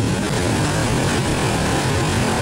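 Ocean waves breaking on a beach: a steady, loud rush with a deep rumble underneath.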